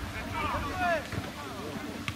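Players' shouts calling across a football pitch, with wind rumbling on the microphone and one sharp thump right at the start.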